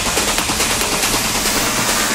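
Uplifting trance track in a build-up: the kick drum has dropped out, leaving a rapid drum roll over a bright noise wash and a sustained low note.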